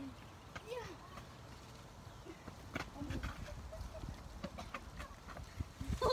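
Quiet outdoor ambience: a low rumble of wind and handling on a handheld phone microphone, growing stronger in the second half, with a few faint clicks and a few faint short calls.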